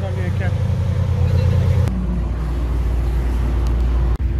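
Lamborghini Aventador SVJ's V12 idling steadily. After a cut about two seconds in, it gives way to a Chevrolet Camaro's engine running with a lower, steady hum as the car rolls slowly.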